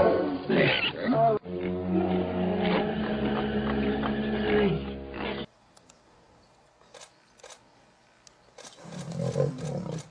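Lion growls and roars over background music with sustained notes, cut off abruptly about five and a half seconds in. After that come faint scattered clicks and a short low growl near the end.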